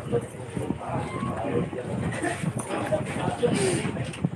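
Indistinct chatter of several spectators talking over one another, with a few short clicks and knocks.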